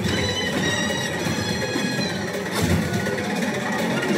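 Film soundtrack music played over cinema speakers and picked up in the auditorium, a dense orchestral score with held notes.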